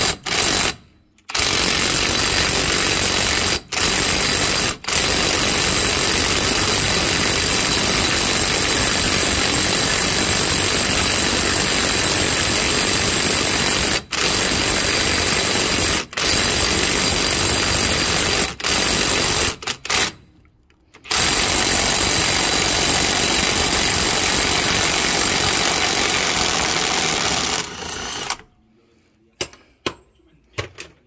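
Electric impact wrench hammering on a rusted wheel-hub axle nut through a socket, trying to break it loose. It runs in long bursts broken by several short trigger releases and a pause of about a second past the two-thirds mark, then stops near the end.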